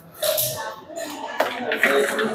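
Indistinct voices of several people talking quietly in a room, with a few faint clicks and knocks.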